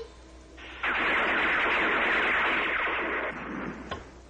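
Cartoon sound effect: a loud, steady hissing, rushing noise that starts about a second in and fades away near the end.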